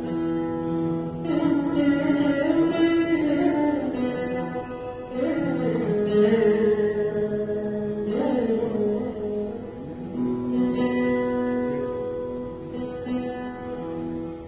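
Three Saraswati veenas played together in Carnatic style: plucked notes that are held and bent smoothly up and down in pitch.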